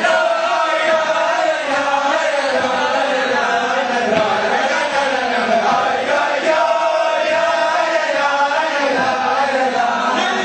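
A group of voices chanting a sung melody together, steady and unbroken.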